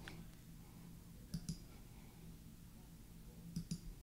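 Faint computer mouse clicks: two pairs of quick clicks, about a second and a half in and again near the end, over a low room hum.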